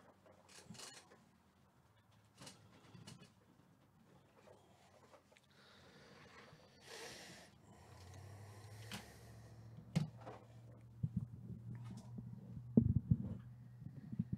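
Quiet handling noises on a table: scattered light clicks and rubs, with a short scrape about seven seconds in. A low steady hum comes in about eight seconds in, and a run of clicks and knocks follows near the end.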